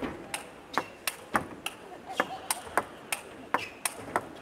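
Table tennis rally: the ball clicks sharply off rackets and table in a fast, even back-and-forth, about three strikes a second.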